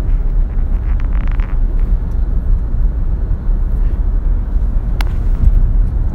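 Lexus car heard from inside the cabin while driving: a steady low rumble of road and engine noise, with a single sharp click about five seconds in.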